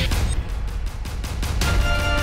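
Background music with deep bass and drum hits; the sustained melody notes drop out briefly and come back in near the end.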